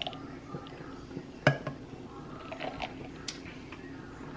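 Glassware and kitchenware being handled on a kitchen counter while a mason jar iced latte is finished: small clinks and taps, with one sharp knock about a second and a half in.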